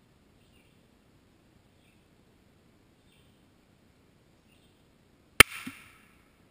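A single .22 rifle shot hitting an old cell phone near the end: one sharp crack, followed by a brief clatter as the phone is knocked over.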